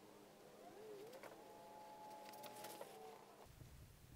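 Near silence: quiet room tone with a faint steady hum. A faint pitched tone rises about a second in and holds until near the end, with a few soft ticks.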